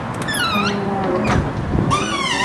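A short high squeak that falls in pitch about a third of a second in, followed by a steady low hum.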